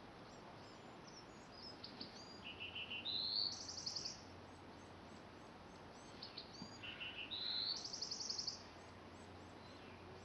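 A songbird singing the same song twice, each phrase a series of quick trills that step up in pitch, starting about two seconds in and again about six seconds in. Other birds chirp faintly throughout.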